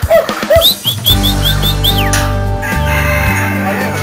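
Birds calling over background music: a few short calls at the start, then a quick run of about seven high chirps in the first two seconds.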